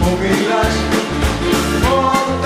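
A sixties-style rock band playing: drums keeping a steady beat under bass notes and a sustained melody from electric guitar and organ.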